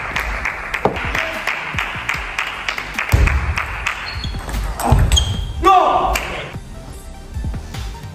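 Table tennis rallies: the ball clicking sharply off rackets and table in quick succession, over background music. A short shout comes about halfway through.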